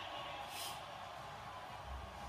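Faint stadium crowd and polite applause from a television broadcast, heard through the TV's speakers in a room, with a short hiss about half a second in.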